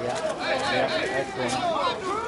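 Indistinct chatter of several people talking at once, no words clear.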